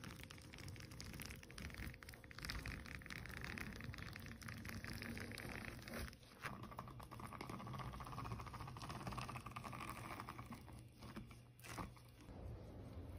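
Metal scraper pushing hardened wax off a honeycomb mould: a continuous crunching, crackling scrape as the wax breaks away in sheets, with a brief break about halfway through.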